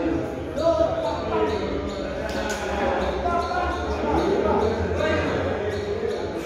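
Several people talking indistinctly in a large, echoing hall, with a few short dull thumps among the voices.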